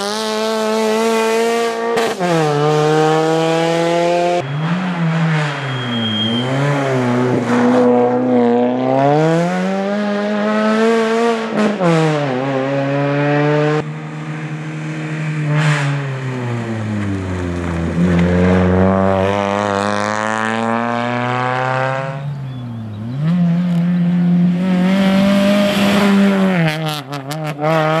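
Suzuki Swift rally car's engine revving hard on a special stage, its pitch climbing through each gear and dropping at each shift or lift, over several short passes cut together with abrupt breaks between them.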